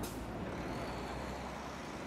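City traffic rumble with a short, sharp hiss right at the start, like a heavy vehicle's air brake, and a faint high thin tone from about a second in.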